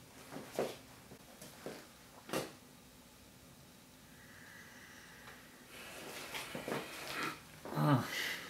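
A man's short, sharp breaths and grunts while throwing punches, four quick bursts in the first two seconds or so. Then quiet room tone, with faint vocal sounds building near the end.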